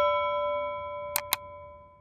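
A single bell-like chime rings out and slowly fades away. Two quick mouse clicks come about a second in, close together.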